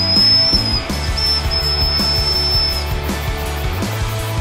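Emergency survival whistle blown in one high-pitched held tone lasting nearly three seconds, broken by a few brief gaps, over background music.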